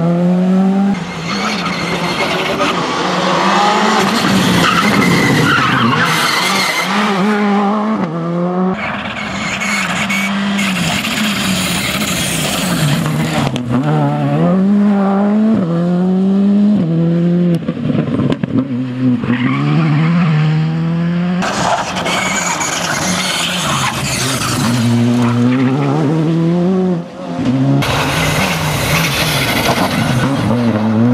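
Škoda Fabia R5 rally car's turbocharged four-cylinder engine revving hard through the gears, its pitch climbing and falling again and again with each shift. Loud bursts of tyre and loose-surface noise come several times as the car is driven hard, over several passes cut together.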